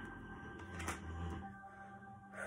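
Soft background music with steady held tones, and a brief rustle with a low thump about a second in as tarot cards are handled on the table.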